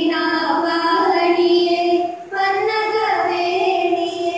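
A group of young women singing in unison into a microphone, holding long sustained notes, with a brief breath pause a little past two seconds.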